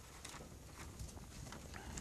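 Faint rustling and light taps of paper and Bible pages handled at a pulpit microphone, with a few soft knocks.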